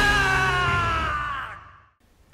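A man's long drawn-out shout of "Power!" from an anime clip, over background music. The held cry slowly sinks in pitch and fades out with the music about a second and a half in.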